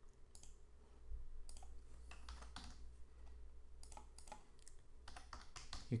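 Faint, irregular keystrokes on a computer keyboard, in small clusters of taps, as a short login name is typed.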